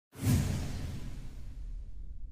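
A whoosh sound effect with a deep low boom. It hits suddenly just after the start and fades away over the next second and a half.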